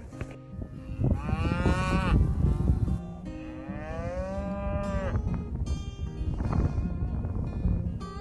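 A herd of beef cows and young calves mooing: two long moos, the first about a second in and the second about three seconds in.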